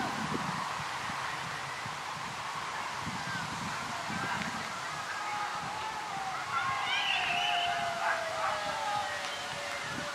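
Distant voices of players shouting and calling across a football pitch over steady outdoor background noise, with a few louder calls from about six and a half seconds in.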